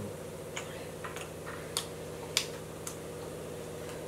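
A person chewing food, with light clicks about every half second over a steady low hum.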